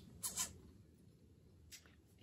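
Faint, brief scratching of a pen writing on planner paper: one short scratch about a quarter second in and a fainter one near the end.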